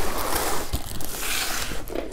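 Cardboard box being opened by hand, its flaps pulled and handled in a continuous rustling scrape.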